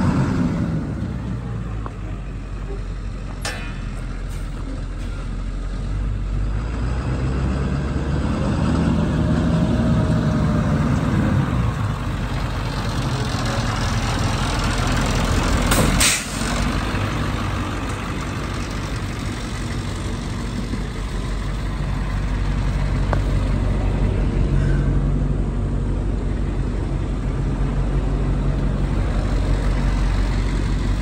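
Engine of an International utility truck idling steadily. A sharp click comes about three and a half seconds in, and a brief loud burst of noise about halfway through.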